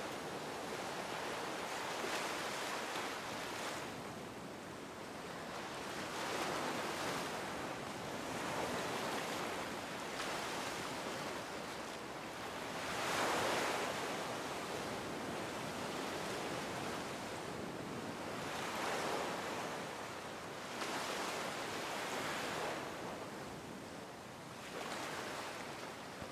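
Ocean surf washing in and out, swelling and fading every few seconds, with the largest wash about halfway through.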